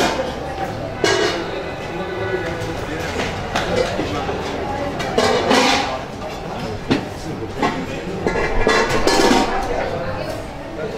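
Indistinct talking of people, with music playing in the background.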